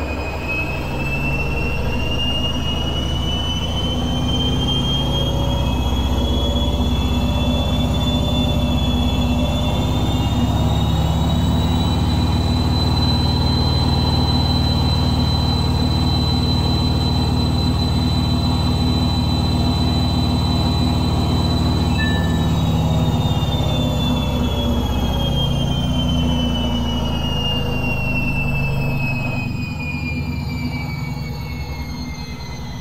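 Samsung front-loading washing machine spinning an unbalanced load: the motor's whine climbs in pitch over about ten seconds as the drum speeds up, holds steady, then falls away over the last several seconds as the drum slows, over a deep rumble from the drum.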